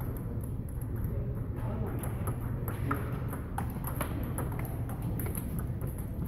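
Table tennis rally: a celluloid-type ball clicking sharply off paddles and the table, the hits coming irregularly about every half second to second, with clicks from other tables mixed in. A steady low hum sits underneath.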